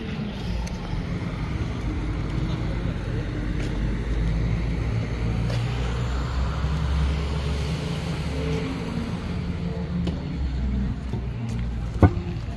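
A MAN double-decker bus's diesel engine running with a steady low hum, loudest around the middle.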